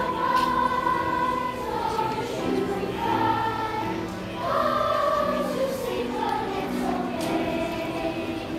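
Children's choir singing, with long held notes.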